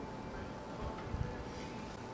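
A faint steady hiss, with a couple of soft clicks about a second in, as a mixture of chlorine pool shock and brake fluid smokes heavily without catching fire.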